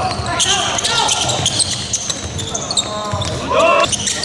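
Live basketball game sounds on a hardwood court: the ball dribbling, short sneaker squeaks, and players calling out, with one loud shout near the end.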